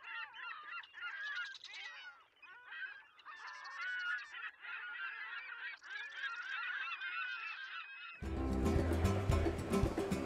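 A flock of birds calling, many short overlapping calls at once. About eight seconds in, louder background music starts abruptly.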